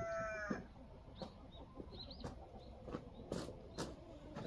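A rooster's crow ends on a long held note about half a second in. Then come a few faint sharp clicks and soft high chirps.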